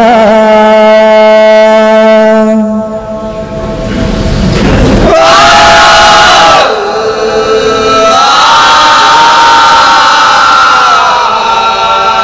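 Male voices singing an Arabic devotional chant in long, drawn-out held notes, without drumming. A short rushing noise rises about four seconds in, then the voices come back louder.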